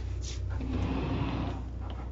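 Steady low hum of the motor coach's generator running, with a soft rustling noise that swells and fades in the middle.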